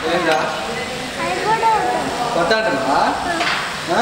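A young child's voice making short rising and falling vocal sounds over a steady hiss of background noise.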